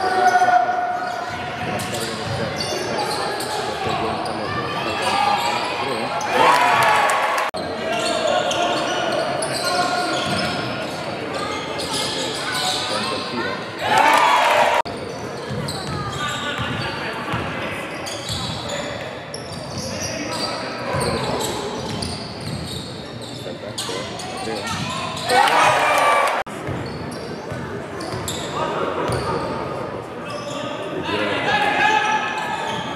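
Live basketball game sound in an echoing gym: the ball bouncing on the hardwood, sneakers squeaking and players and bench voices calling out. About a quarter of the way in, halfway and near the end come louder bursts of shouting, each cut off abruptly where the highlights are spliced.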